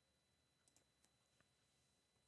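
Near silence, with four faint clicks of a computer mouse in the middle of the stretch.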